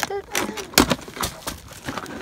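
Scissors cutting through a thin plastic bag and the plastic crinkling, heard as a string of sharp snips and clicks, the loudest a little under a second in.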